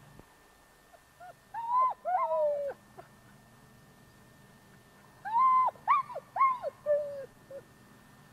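A dog whining in two bouts of short, high, arching whines, the second bout near the end a string of several rising-and-falling cries.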